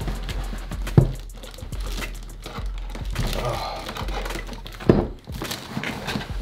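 Cardboard product box being handled and opened: a sharp thunk about a second in and another near the end, with cardboard flaps rustling and scraping between.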